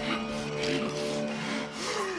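Film soundtrack: held low music notes under a rasping, scraping noise that swells about three times.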